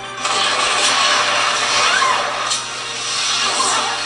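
An explosion sound effect from a TV action scene: a dense rushing blast that starts suddenly just after the start, holds for several seconds and eases off near the end.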